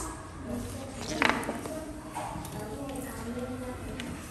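A child's voice speaking quietly, with a short sharp sound about a second in.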